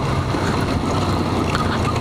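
Motorcycle engine running steadily under way, with wind rushing over the helmet-mounted microphone.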